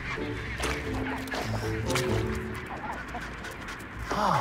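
Chinstrap penguins calling in a colony, short honking calls over background music that holds long steady notes and stops about two and a half seconds in.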